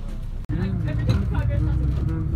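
Steady low drone of a 2011 VDL Bova Futura coach on the move, engine and road noise as heard inside the passenger cabin, breaking off abruptly about half a second in and coming back louder, with a voice over it.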